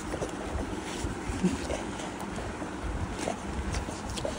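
Rumbling, rustling handling noise as the phone's microphone rubs against a dog's fur while the dog nuzzles in close against a man's chest and chin.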